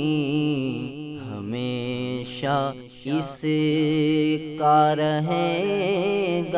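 A male voice singing a naat in long, drawn-out, ornamented notes, with a brief break about halfway through.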